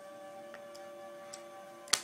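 A few faint ticks and then one sharp click near the end as puzzle pieces are handled and set down, over a faint steady multi-tone hum.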